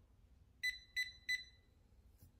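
Three quick electronic beeps, about a third of a second apart, as the Lift treatment is sent from the app to the ZIIP Halo microcurrent facial device.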